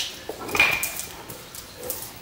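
A pet dog whining in short bursts, the clearest about half a second in with a thin high note.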